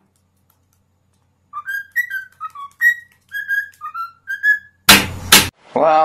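A pet bird whistling a run of about a dozen short notes that change pitch from note to note, like a little tune. This is followed by a loud, harsh burst of noise lasting about half a second.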